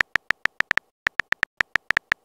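A rapid run of short, sharp electronic key-tap ticks, about seven a second and slightly uneven: the on-screen keyboard typing sound of a texting-story app while a message is typed.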